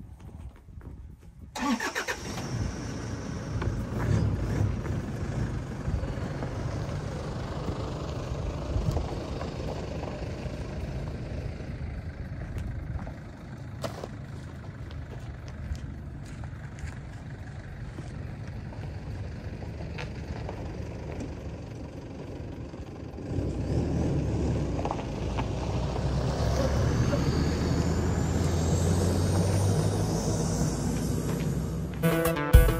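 SUV engine starting about a second and a half in, then running steadily as the vehicle pulls away. The engine sound grows louder again in the last few seconds, with a rising whine.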